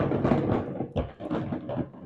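Loose items clattering and knocking inside a GIVI B32 Bold plastic motorcycle top box as it is rocked by hand: the rattle that loose contents make in the box, which he calls really annoying.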